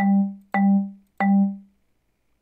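Song Maker's marimba voice plays one note, Sol, three times, once as each note is clicked onto the grid. The notes come about half a second apart, and each is a sharp mallet strike that dies away quickly.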